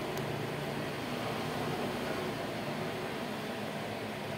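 Steady background noise: an even hiss with a faint low hum underneath, and no distinct knocks or tool sounds.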